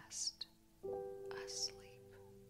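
Soft ambient meditation music of long held notes, with a new, brighter note coming in a little under a second in. Two short breathy hisses, like a whispered breath, sit over it near the start and again about one and a half seconds in.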